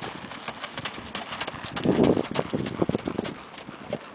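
Hoofbeats of a ridden chestnut Quarter Horse gelding on a gravel lane: quick, uneven clip-clops of a loping gait, growing fainter near the end as the horse moves away.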